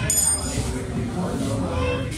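A heavy cleaver chops into fish on a wooden block, a sharp knock with a short high ring after it. A wavering, voice-like call follows and rises near the end.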